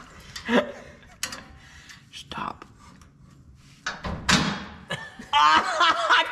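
A few short metal knocks and taps as a suspension rod end and shim are worked into a steel chassis bracket by hand, with a louder knock about four seconds in. A person's voice comes in near the end.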